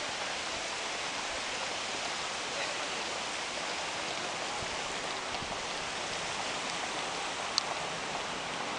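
A steady, even rushing hiss, with one short sharp click near the end.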